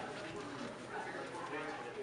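Indistinct, muffled voices in the background, with footsteps as someone walks through a doorway.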